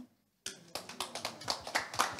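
Light, scattered audience clapping, many pairs of hands slightly out of step, starting about half a second in.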